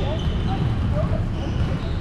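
Volleyball game sound at a distance: faint players' voices over a steady low rumble, with a faint knock of the ball near the end.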